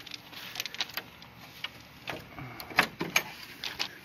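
Handling noise from a hand-held phone on the move: irregular light clicks and rustles, with one sharp click nearly three seconds in.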